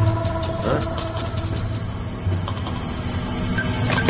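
Suspenseful background film score of sustained tones over a low drone.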